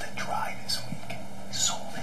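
Hushed, whispered speech over a low steady hum.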